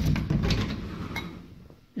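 Closet door being opened: a sharp click, then a rattling slide that fades over about a second and a half.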